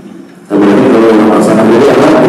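A man's voice chanting Arabic in the slow, melodic style of Quran recitation, picking up about half a second in after a brief pause and holding a long, drawn-out note.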